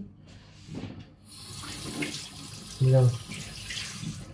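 Kitchen tap water running into a sink, a steady hiss that starts about a second in, probably rinsing fruit. A short vocal sound cuts in near three seconds.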